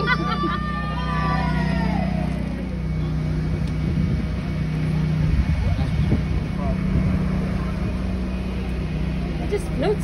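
A parade float's engine running with a steady low drone as the float moves along, with voices calling out in the first couple of seconds.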